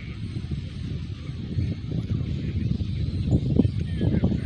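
Low, uneven rumble of wind buffeting an outdoor phone microphone, gusting a little stronger near the end.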